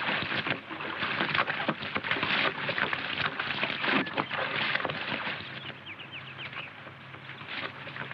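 Horses wading through a shallow stream, their hooves splashing in the water. The splashing is busiest for the first five seconds or so and quieter after.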